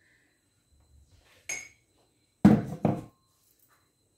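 Kitchenware being handled: a light clink about one and a half seconds in, then two sharp knocks close together about a second later, the second ringing briefly.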